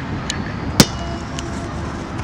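A single sharp slap, loud and very short, just under a second in, over steady outdoor background noise, with a few faint clicks.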